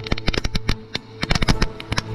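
Firework fountain spraying sparks, giving a dense run of rapid, irregular pops and crackles, with background music underneath.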